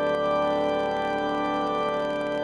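Allen digital organ playing full, sustained chords that are held steady through the moment.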